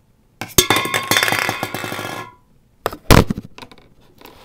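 Handling noise: about two seconds of dense rattling and clinking, then a pause and two sharp knocks near the end.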